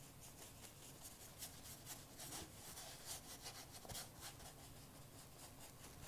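Faint strokes of a paintbrush spreading gesso on a paper journal page: a loose run of short, soft rubs and scrapes, several a second.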